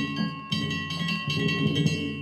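Danjiri festival music: a large brass gong struck with a stick in a fast, repeated rhythm, its metallic ring sustained between strikes, over beating drums.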